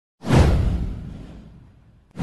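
A falling whoosh sound effect with a deep bass boom under it. It starts sharply about a quarter of a second in and fades out over about a second and a half.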